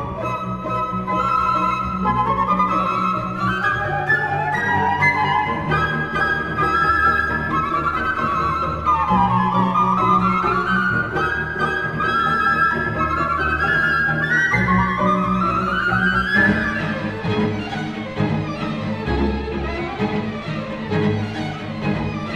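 Two solo flutes and a chamber string orchestra playing a fast classical concerto movement. Quick upward runs of notes repeat in the high register over held low notes from cellos and basses.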